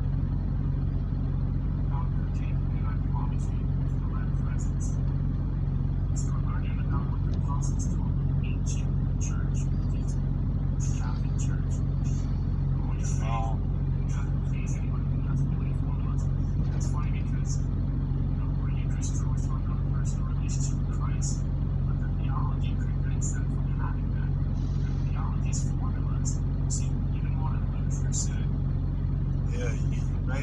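Steady low hum of an idling vehicle engine, with faint, indistinct voice fragments over it.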